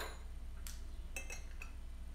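A few faint, light clinks of porcelain teaware being handled: a white ceramic tea strainer settled onto a glass fairness pitcher and a small tasting cup moved, with one click past halfway and a quick cluster of ringing ticks after it.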